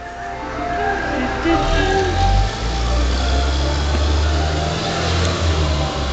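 Garbage truck engine, a low steady rumble that comes up about a second and a half in as the truck drives off, with its jingle music fading out over the first couple of seconds.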